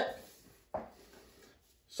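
A short, sudden rustle of a disposable glove being handled and pulled on, about a second in, fading quickly.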